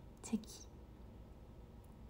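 A woman says one short word, "cheki", softly, then quiet room tone with a faint low hum.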